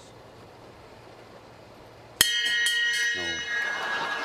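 Quiet room tone, then about two seconds in a sudden loud crash followed by a few quick clinks and a lingering ringing tone.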